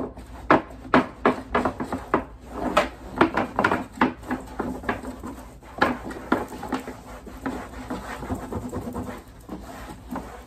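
Paper towel rubbing and wiping the underside of a plastic trash can lid in quick, irregular strokes.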